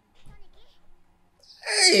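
Speech only: faint dialogue early on, then a loud, drawn-out man's exclamation of "dang" that slides down in pitch near the end.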